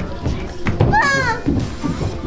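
A young child's high-pitched vocal cry about a second in, falling in pitch, over background music.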